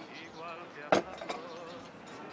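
A china cup or crockery clinks sharply on the café table about a second in, followed by a smaller clink, over a faint wavering buzz in the background.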